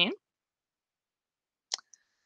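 Dead silence from a noise-gated voice-call recording, broken about three-quarters of the way through by one short, sharp click with a faint second tick right after it.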